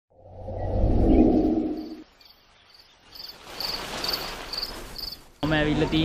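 A deep rumbling swell that rises and dies away over the first two seconds, then insect chirping, about two chirps a second, over a hiss. A man starts speaking just before the end.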